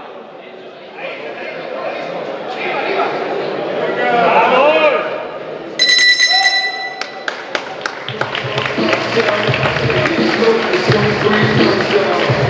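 Voices shouting in a large hall during a boxing round. About six seconds in, a steady tone sounds for about a second and stops sharply, signalling the end of the round. About two seconds later, music with a steady beat starts under the hall noise.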